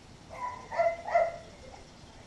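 A dog barking: three short barks in quick succession, the first fainter and the other two louder.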